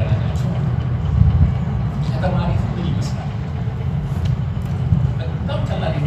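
A man speaking, heard over a steady, heavy low rumble.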